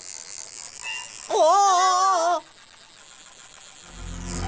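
Cartoon sound effect of a taped-up alarm clock trying to ring and failing: a loud wavering buzz of about a second, starting a little over a second in.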